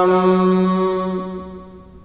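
A man's voice chanting a Sanskrit dhyana verse, holding the final syllable of a line on one steady note that fades away over the last second.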